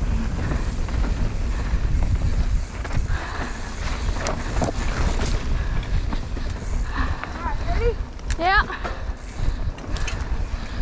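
Mountain bike being ridden fast down a dirt trail: wind buffeting the bike-mounted camera's microphone, with tyre rumble and knocks and rattles from the bike over rough ground. Near the end a short pitched sound slides sharply in pitch.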